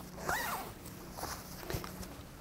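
A zipper on the back of a child's costume vest being pulled up in one short zip just after the start, followed by a few faint ticks of handling.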